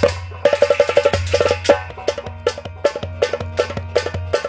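Harmonium holding sustained reedy chords over a steady low drone, with fast, sharp hand-drum strokes several times a second: an instrumental passage between sung lines.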